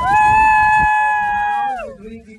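Two high voices hold one long note together, sliding up at the start and falling away near the end.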